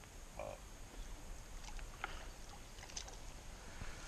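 Faint small water splashes and light ticks from a small hooked carp thrashing at the surface of a pond near the bank.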